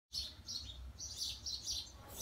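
Birds chirping: a quick series of short, high-pitched chirps.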